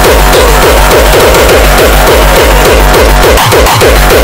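Electronic dance music (techno/house): a loud, dense instrumental section with a pulsing deep bass line and rapid repeating synth figures, no vocals.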